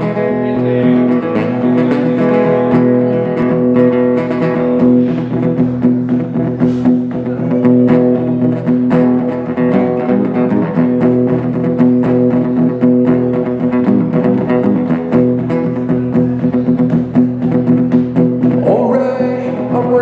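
Acoustic guitar played solo, strummed and picked in a steady instrumental intro with chords ringing on.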